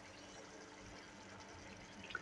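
Faint, steady simmer of a tomato-onion curry gravy with boiled eggs in a nonstick pan, barely above silence.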